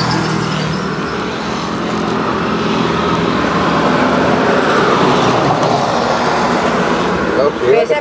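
Electric hair clipper running with a steady buzz while cutting a man's hair close to the head.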